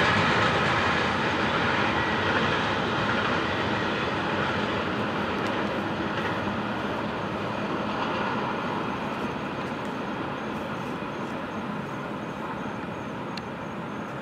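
An intermodal freight train's cars rolling past on the track, a steady rumble and rattle of wheels on rail that slowly fades as the train draws away.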